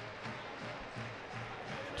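Quiet background music over a steady wash of stadium crowd noise.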